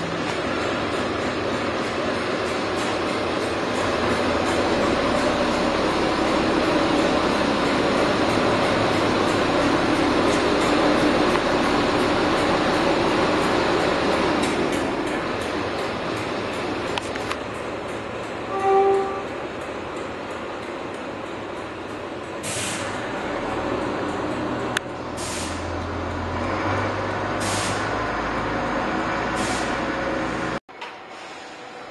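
Locomotive shunting inside a workshop shed: a steady rumble and hiss of moving rolling stock for the first half, then a short tooted note about two-thirds of the way through. Near the end a diesel shunter's engine runs low and steady, with four short sharp hisses of air.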